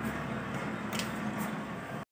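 Steady background hiss, with two faint clicks about a second in.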